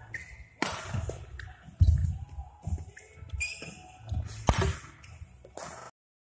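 Badminton rally in a large hall: a few sharp racket strikes on the shuttlecock, one to three seconds apart, with the thuds and scuffs of players' footwork on the court floor.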